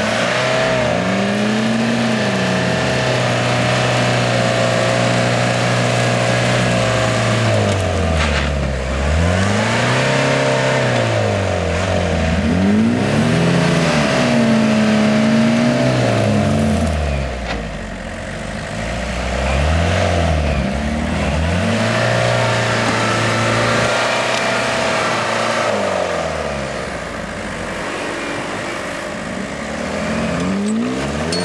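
Off-road 4x4 engine revving up and down over and over, each swell lasting a couple of seconds, while a vehicle strains on a tow strap over a sand and gravel hump.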